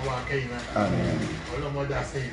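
A man talking, with a louder drawn-out vocal stretch about a second in.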